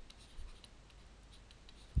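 Faint scratching and light ticks of a stylus writing on a pen tablet, with a small tap about half a second in.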